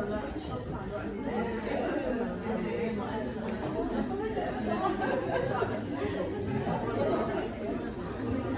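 Chatter of a group of people talking at once, overlapping voices with no single voice standing out.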